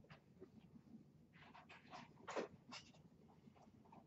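Dry-erase marker drawing strokes on a whiteboard: a few short scratchy squeaks in a row, clustered about one and a half to three seconds in, against a faint room hush.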